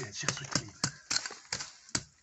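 A small metal-bladed hand tool chopping and scraping into dry, stony soil to dig out weeds, in quick separate strokes about three a second.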